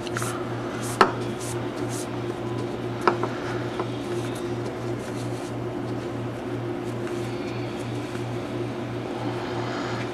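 Paracord being pulled and threaded through a Turk's head knot on a PVC pipe, with light handling ticks and a sharp click about a second in, another about three seconds in, over a steady low hum.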